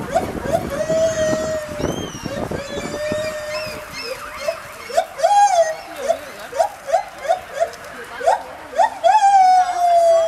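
White-handed (lar) gibbons singing. A few clear hoots and two long held notes come first, then a quickening run of short rising hoots that grows louder. The song ends in a long falling note near the end.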